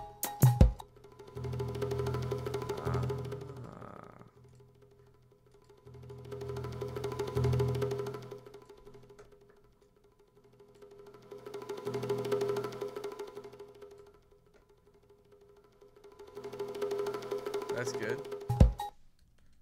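A sampled bongo-roll loop plays back in four swells, about five seconds apart. A high-pass EQ is being raised on it to strip out a deep frame drum hiding in the sample's low end, and the low rumble is faint by the last swell. A few sharp clicks come right at the start.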